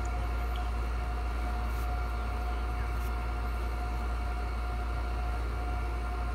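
A steady low hum with a faint, steady higher tone above it and no change in level.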